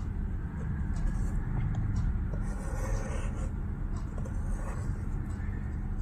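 Steady low rumble of background noise, with faint scratching and a few light clicks as a pencil compass draws an arc on paper.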